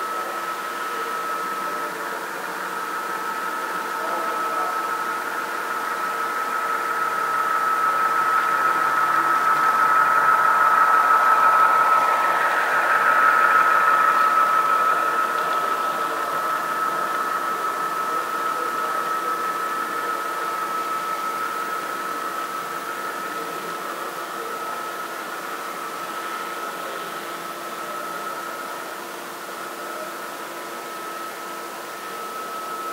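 Model diesel locomotives and a long train of autorack cars rolling past on a model railroad layout: a steady hum with a constant high whine. It grows louder as the locomotives come by close, at its loudest about ten to fifteen seconds in, then slowly fades as the cars follow.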